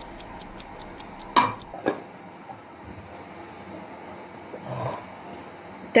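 Clock-ticking sound effect marking a ten-minute rest: a quick run of light, even ticks, with two louder clicks about a second and a half in, then it dies away to a faint hiss.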